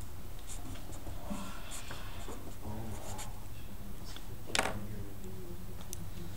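Felt-tip marker strokes scratching across paper as words are hand-written, in short uneven strokes, with one brief louder sound a little past halfway.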